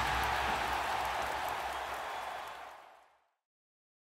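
A steady rushing noise with a low hum beneath it fades out and stops dead about three seconds in, leaving silence.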